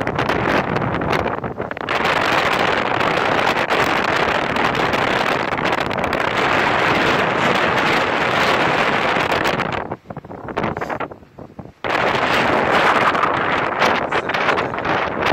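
Strong blizzard wind buffeting the microphone, a loud continuous rush that drops away for a couple of seconds about ten seconds in and then comes back.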